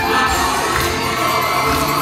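Live music with several voices singing, over a steady low beat, mixed with the shouts and cheers of a lively crowd.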